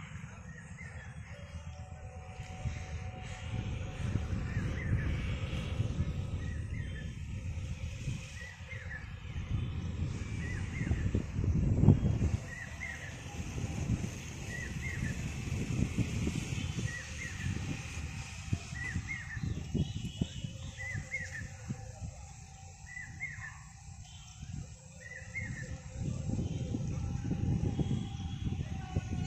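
Wind buffeting the microphone in an open field: a low rumble that swells in gusts, strongest about halfway through. Over it, a short high chirp repeats about every two seconds, like a bird or insect calling.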